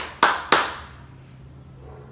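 Three quick hand claps about a quarter of a second apart in the first half second, then quiet with a faint steady low hum.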